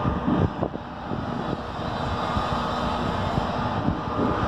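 Steady outdoor rumble with a faint continuous hum, broken by irregular low thumps of wind buffeting the microphone, strongest in the first second.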